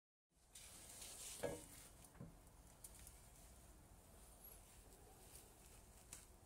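Near silence: faint room tone with a few soft clicks, the clearest about one and a half seconds in.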